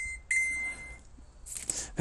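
High electronic beeps: the last of a quick run of short beeps, then one steady beep lasting under a second. A short hiss follows near the end.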